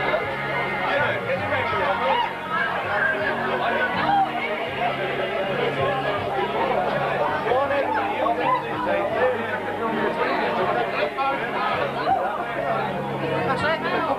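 Pub crowd chatter, many voices talking over one another, with music playing underneath.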